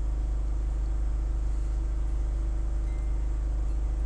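Generator engine running steadily: a low, even hum that does not change.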